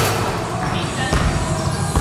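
Basketballs bouncing on a hardwood gym floor, a few scattered thuds.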